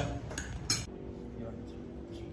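A metal fork clinking against a ceramic dinner plate, with two sharp clinks in the first second.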